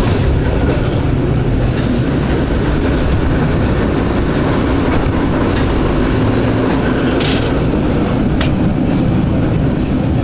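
San Francisco cable car running along its street track, heard from aboard: a steady, loud rumble and rattle, with a few sharp clicks in the second half.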